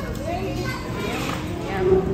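Indistinct background voices, children's among them, with no clear words.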